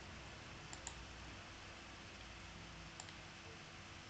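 A few faint computer mouse clicks, two in quick succession just under a second in and one more near three seconds, over a low steady room hum.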